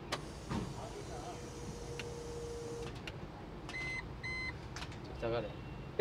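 Soft clicks of the ignition key being turned in a Tata Ace EV electric mini-truck, then two short electronic beeps from the vehicle about half a second apart.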